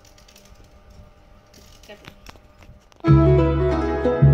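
A few faint knife clicks as a small vegetable is sliced by hand, then about three seconds in loud background music with plucked strings starts and takes over.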